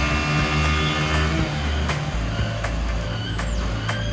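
Newly assembled Hero motorcycles' single-cylinder four-stroke engines running on the end-of-line test stands, a steady low drone, mixed with background music.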